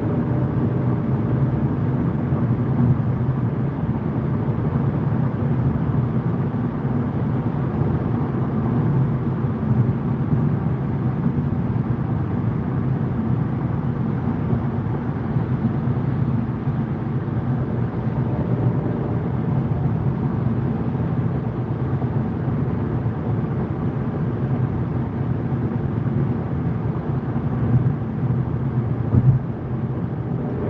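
Steady road and engine noise of a car cruising on a motorway, heard from inside the cabin, with a brief louder bump near the end.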